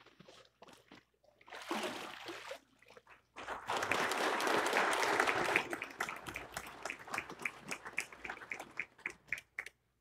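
Water splashing in a baptistry as a person is immersed and lifted back out, followed by a congregation applauding; the clapping swells a few seconds in, then thins to scattered claps and stops near the end.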